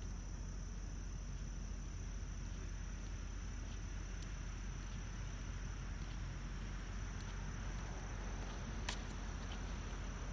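A steady chorus of crickets, one continuous high-pitched trill, over a low background rumble, with a sharp click about nine seconds in.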